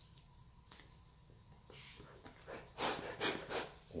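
Breathing through a half-face respirator as it is pulled on: quiet at first, then several short, sharp puffs of air through the mask in the second half.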